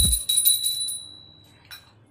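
Brass puja hand bell rung rapidly during the aarti. The strokes stop about a second in and the bell rings out and fades. There is a short low thump right at the start.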